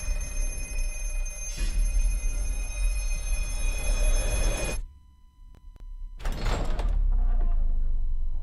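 Horror-film trailer sound design: a low rumbling drone layered with steady high tones, which cuts off abruptly about five seconds in. After about a second of quiet, a short harsh noise burst sounds, and a deep rumble resumes.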